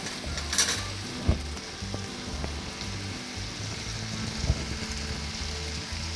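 Chopped onions and tomatoes with spice powders frying in a pot, a steady sizzle, with a brief louder rustle about half a second in.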